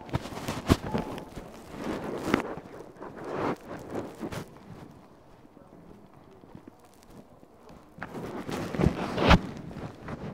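Handling noise on a handheld phone's microphone as it is swung about: rubbing and rustling with several sharp knocks, in two spells, the first over the opening four seconds or so and the second starting about eight seconds in, quieter in between.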